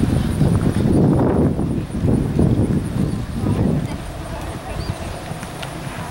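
Hoofbeats of a horse cantering on arena sand: dull, muffled thuds about two a second, dying down about four seconds in.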